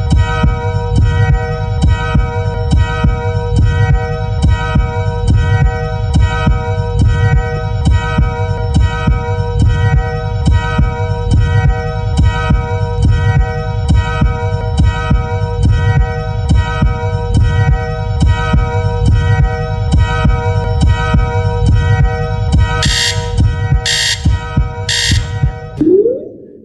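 Countdown timer track for a 30-second thinking period: a steady electronic drone over a regular heartbeat-like bass pulse. Near the end come three loud beeps about a second apart, marking the last seconds of the time limit.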